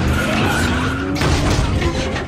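Car tyres skidding and screeching in a burnout, with an engine revving up, over an action film score.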